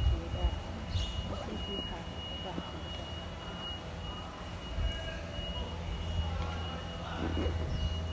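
Outdoor ambience: a steady low rumble with faint, distant voices of other people and a thin, steady high tone.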